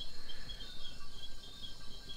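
Insects chirping, cricket-like: a steady string of short, high chirps, a few each second, over a faint low hum.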